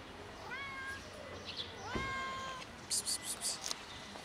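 Fluffy white-and-grey stray cat meowing twice, about half a second in and again about two seconds in, each call gliding up and then holding level. Near the end comes a quick run of about five sharp clicks, the loudest sounds here.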